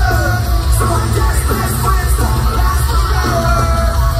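A live rock band playing loud, with a singer's voice holding notes over heavy bass and drums, heard from within the audience.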